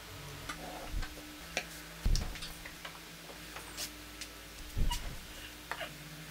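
Wooden parts being handled and set down on a wooden workbench: scattered light clicks and taps, with two heavier knocks about two seconds in and near the five-second mark.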